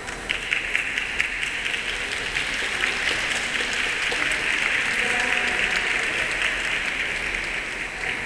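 Audience applauding: a few separate claps right at the start quickly build into full, steady applause, which dies away at the very end.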